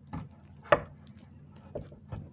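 Wooden frame of a Mont Marte A2 drawing board knocking as it is handled and tilted: a soft knock at the start, one sharp click a little before a second in, and a fainter knock near the end.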